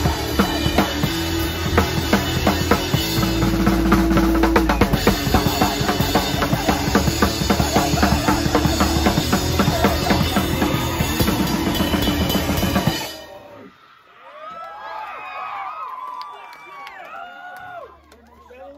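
Live crust punk band at full volume, with fast, hard-hit drums and cymbals loudest and distorted guitar under them. The song stops dead about two-thirds of the way in, and voices shout and cheer in the gap that follows.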